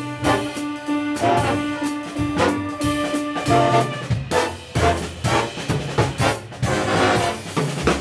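Jazz big band playing: trombones, trumpets and saxophones over a drum kit, with many sharp accents from the drums, cymbals and brass. A low note is held under the band for about the first three and a half seconds, and the band cuts off sharply at the very end.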